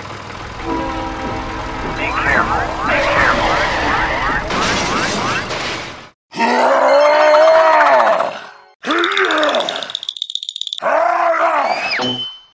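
Edited-in sound effects: a noisy rumble with steady tones and repeated gliding whistles for about six seconds, then three short vocal groans, each rising and falling in pitch.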